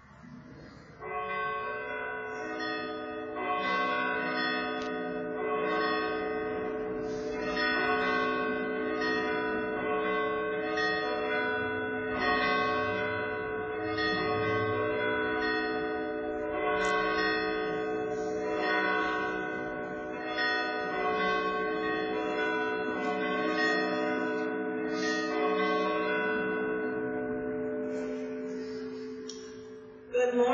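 Church bells ringing, a new strike about every second, each tone ringing on and overlapping the next. The ringing starts about a second in and fades near the end.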